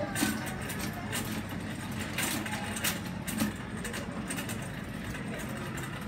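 Store-aisle ambience while walking: a steady low rumble with a few scattered knocks and clicks, and faint voices in the background.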